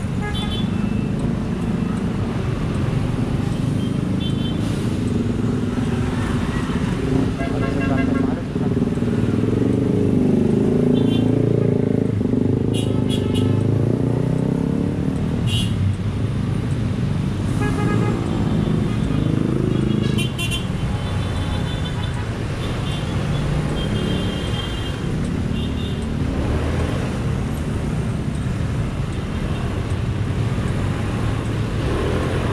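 Dense road traffic heard from a scooter in a slow queue: vehicle engines running close by, with short horn beeps at intervals.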